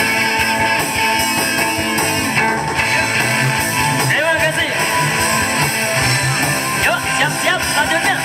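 Live rock band playing loudly: electric guitars over bass and drums, with some lead lines bending in pitch around the middle and near the end.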